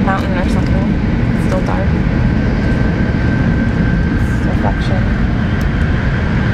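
Shinkansen Hikari train running at speed through a tunnel, heard from inside the passenger cabin: a loud, steady rumble, with a thin steady whine joining about two seconds in.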